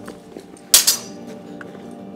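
A single sharp metallic clash of swords about three-quarters of a second in, ringing briefly, over steady background music.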